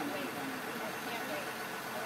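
A vehicle engine idling steadily outdoors, with faint voices underneath.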